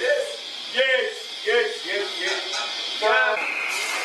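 Men's voices in short, separate outbursts with no clear words. A steady high-pitched whine starts near the end.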